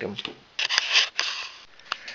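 Brief scraping rustle of plastic sewer-pipe parts being handled on a workbench about half a second in, then a single click near the end.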